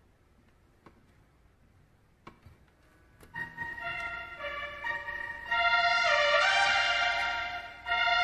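Faint room tone with a couple of light clicks, then about three seconds in, held organ-like keyboard chords come in. The steady tones change chord several times and swell louder about halfway through.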